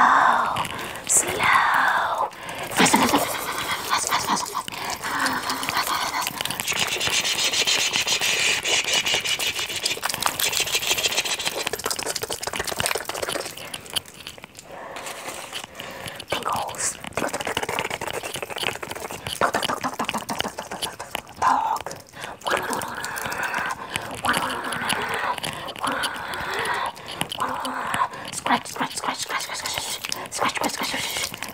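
Close-miked ASMR whispering with no clear words, mixed with a dense rustling from fast hand movements right by the microphone.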